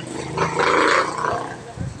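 A person's voice: a short, loud, rough vocal sound without clear words about half a second in, fading away after it.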